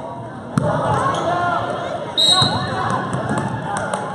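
Basketball thudding about half a second in, then a short, loud referee's whistle blast a little after two seconds that stops play, over the voices of players and spectators echoing in a gymnasium.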